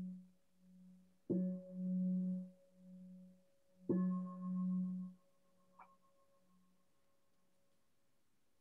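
A meditation bell rung in a series of three strikes to close the session. The first ring is already sounding, and two more strikes come about two and a half seconds apart. Each rings with a pulsing hum and dies away, the last fading out about five seconds in.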